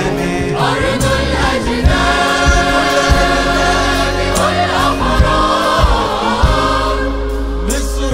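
Live Arabic inshad (Sufi devotional chant) music: a male chorus and band hold long, sustained notes, with a melodic line winding over them and scattered drum hits beneath.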